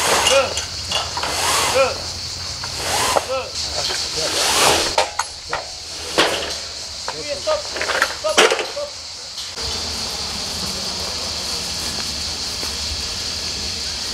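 People's voices calling out in short shouts that rise and fall in pitch, over a steady high insect chirring; about nine and a half seconds in the voices stop, leaving only the chirring and a steady outdoor hiss.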